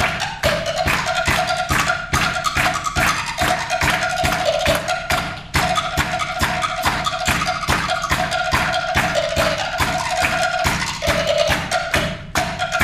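Live drum solo on a Pearl drum kit: a fast, unbroken run of strokes on drums and cymbals, mixed with a repeated pitched wooden knock like wood blocks.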